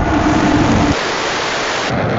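Rocket engines at liftoff: a loud, dense rushing noise with a deep rumble underneath. The deepest part of the rumble drops away about a second in.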